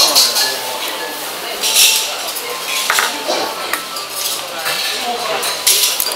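Tableware clinking: short, scattered clicks of dishes and cutlery against the steady clatter and chatter of a busy eating place.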